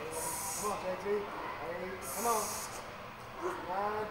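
A weightlifter's sharp, hissing breaths, about one every two seconds, in time with heavy bench press reps, under the indistinct voices of spotters; a voice rises near the end.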